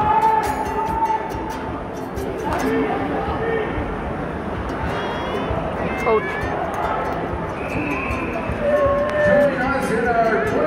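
Ice hockey arena sound from beside the players' bench: crowd and voices mixed with arena music, with sharp clacks of sticks and puck, most of them in the first few seconds.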